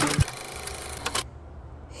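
A rapid mechanical rattling noise for about the first second, which cuts off suddenly and leaves a low steady hum.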